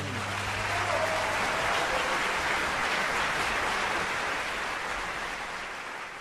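Audience applauding after a live gospel quartet song, while the final low held note of the music dies away in the first second or so; the clapping eases off toward the end.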